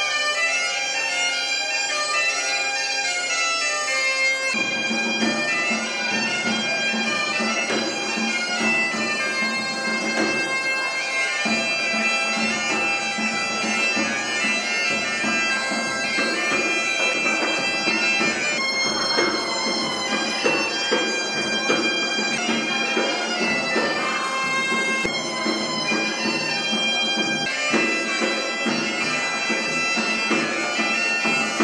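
Bagpipe music: a reedy melody over a steady low drone, which comes in about four seconds in.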